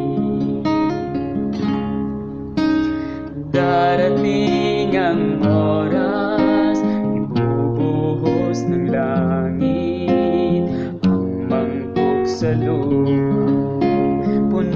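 Instrumental music on acoustic guitar, plucked and strummed, with notes changing every fraction of a second.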